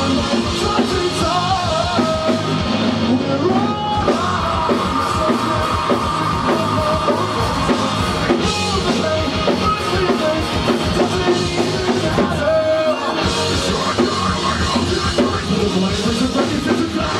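A live rock band playing loudly, with drum kit, electric guitars and singing. A long held note runs from about four to eight seconds in. It is heard from within the crowd in a small venue.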